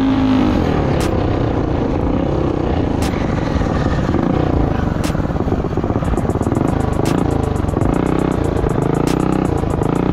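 Minibike's four-stroke engine running under throttle on a dirt trail, its pitch rising and falling as the rider speeds up and backs off. Background music with a light beat plays underneath.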